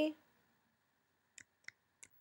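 Two faint computer keystrokes about a third of a second apart near the end, typing a two-digit value into a field; otherwise quiet room tone.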